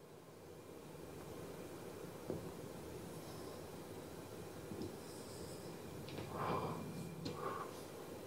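A man puffing on a cigar and breathing the smoke out through his nose (a retrohale): a soft, steady breathy rush, with two short louder puffs near the end.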